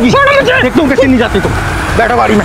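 Loud, agitated voices of a man and a woman shouting as they scuffle, with pitch swinging sharply up and down, easing off near the end.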